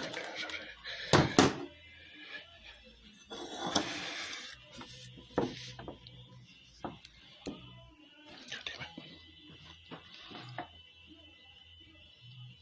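Scattered light knocks and taps from handling a drinking glass and the phone, between muttered cursing.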